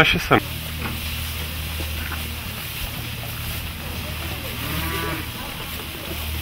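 Cattle mooing: one call at the very start and a fainter one about five seconds in, over a steady low hum.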